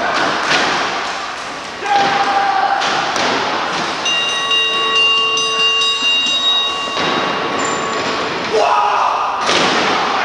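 Heavy thuds of wrestlers hitting the canvas mat and ropes of a wrestling ring: several near the start and another near the end, with voices shouting amid the scuffle.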